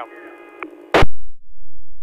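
Audio glitch in a streamed broadcast: a single sharp click about a second in, after which the sound drops out to a faint low rumble.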